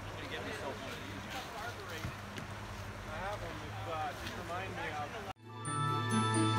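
Whitewater creek running high in rapids, with people's voices calling over it. About five seconds in, it cuts off abruptly into music.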